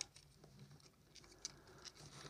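Near silence, with a few faint small clicks and rubs from the metal and plastic parts of a dismantled LED head torch being handled.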